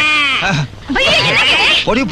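Women shrieking and wailing 'aiyoh' in high, wavering cries, with a brief break a little over half a second in.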